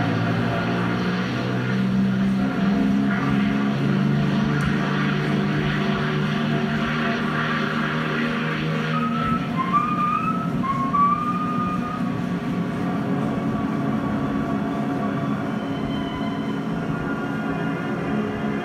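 Twin radial engines of a Douglas DC-3 Dakota droning steadily, mixed with a film-score music track. Short rising musical phrases come in about halfway through.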